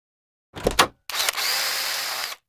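Logo intro sound effect: two quick sharp hits about half a second in, then a steady rushing noise with a faint high tone running through it from about a second in.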